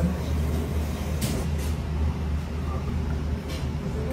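Restaurant room ambience: a steady low hum with faint murmuring voices and a few light clicks.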